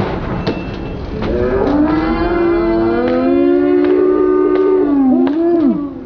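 Skateboard wheels rolling on a concrete sidewalk, clacking over the cracks, while a long held, moo-like vocal howl rises about a second in, holds for about three seconds and falls away near the end.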